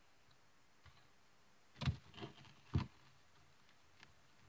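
A utensil knocking against a small cup while stirring cornstarch and water for oobleck: two light knocks about a second apart, with a fainter tap between.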